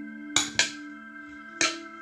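Background music of soft sustained tones, with three sharp clicks of a spoon knocking: two close together about a third of a second in, and one more past one and a half seconds.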